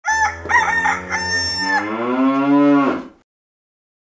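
A rooster crowing, then a long low moo from a cow whose pitch rises and falls. The sound stops suddenly about three seconds in.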